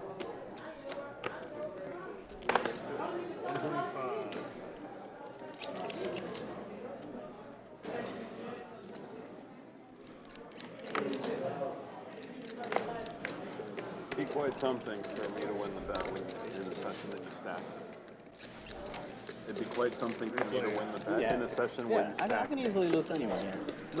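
Low murmur of voices around a poker table, with scattered sharp clicks of poker chips being handled and stacked.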